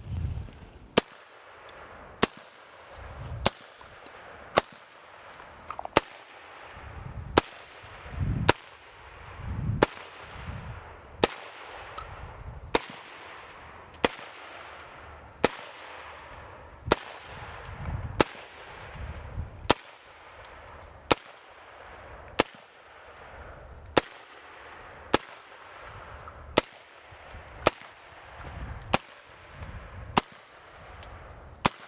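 Suppressed AR-15 rifle firing steady, unhurried semi-automatic shots, about twenty in all, a little over a second apart, each a sharp crack, some followed by a short low rumble.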